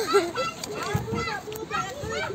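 Children's voices: kids chattering and calling out in high voices while they play.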